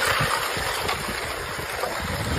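Lake ice sheet shoving onto the shore: a steady grinding hiss with many small irregular cracks and crunches as ice plates break against the bank.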